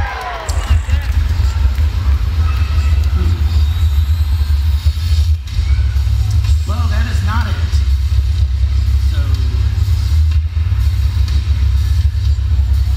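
A deep, steady bass rumble played over the stage's loudspeakers as a teaser video starts, dipping briefly twice, with scattered voices above it.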